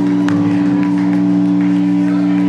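Live band's amplified sound holding a steady low drone: two sustained low tones run unbroken, with a few sharp clicks and crowd noise over it.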